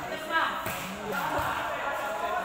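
Volleyball players' voices shouting and calling out during a rally, with a brief sharp sound about half a second in.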